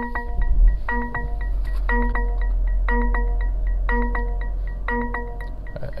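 Mercedes-Benz GLE 350 starting up: a low engine rumble comes in at once, peaks about half a second in and settles to a steady idle. Over it, the car's electronic warning chime sounds a multi-tone ding about once a second throughout.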